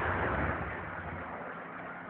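A car's engine rumble and road noise fading away over the first second, leaving a low steady street noise.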